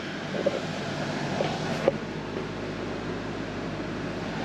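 Wall-mounted room air conditioner running with a steady hum, with a few faint clicks in the first two seconds.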